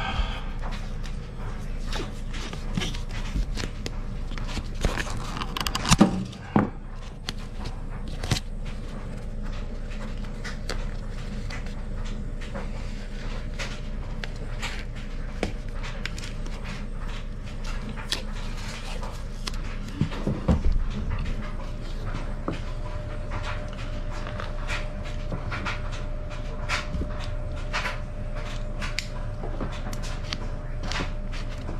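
Black insulation tape being pulled off the roll and wrapped around a refrigerant suction line: scattered crackling and peeling clicks, with a few louder handling bumps, over a steady low hum.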